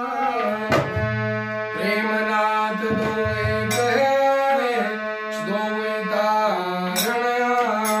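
Harmonium playing a devotional melody in sustained reedy notes that step from pitch to pitch, accompanied by a dholak struck by hand, its bass head giving deep thumps between sharper strokes.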